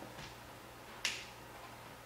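A single sharp snap about a second in, with a fainter click a little before it, over a low steady hum.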